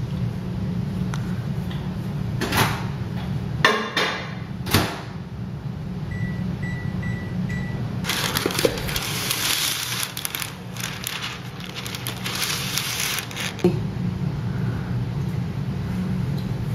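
A microwave oven runs with a low hum as it melts chocolate chips on a 30-second setting. About six seconds in it gives four short high beeps that mark the end of the cycle. After that comes several seconds of crinkling and rustling as parchment paper is pulled from its roll.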